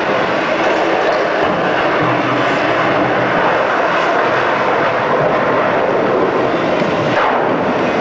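Loud club sound system playing dance music, heard through an overloaded camcorder microphone as a steady, dense noisy wash with no clear beat. A short falling tone sounds near the end.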